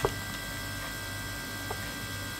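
Polaroid Z2300 camera's built-in Zink printer humming steadily as it feeds a print out of its slot, with a faint click at the start and another near the end.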